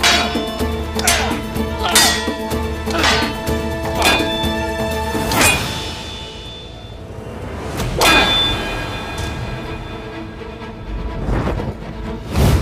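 Curved steel sabres clashing in a sword fight. A quick run of ringing clangs comes about once or twice a second for the first five seconds or so, then a lull, then a few more single clangs later on.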